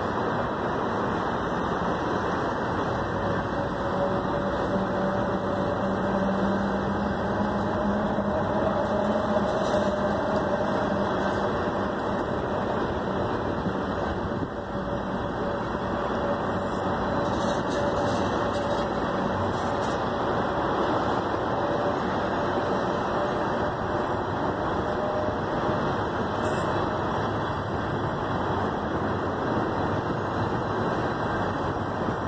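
Freight train of tank cars rolling past, a steady noise of wheels on rails with a faint steady hum, dipping briefly about halfway through.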